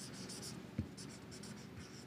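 Felt-tip marker writing Chinese characters on paper in short scratchy strokes, with one soft low knock a little under halfway through.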